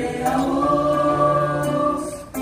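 A young murga chorus of many voices singing together, holding long sustained notes.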